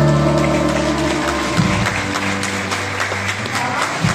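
A live folk band with accordions and bass guitar holds the closing chord of a song, moving to a second low chord about halfway through. Audience applause starts under it about a second in and grows.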